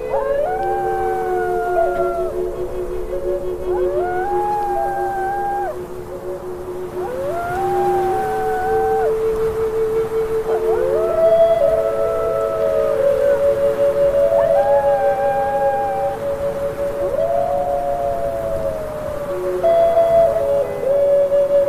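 Wolves howling: about six long howls, each gliding up, holding and falling away, with the last one falling longest near the end. They sit over slow music of long held notes.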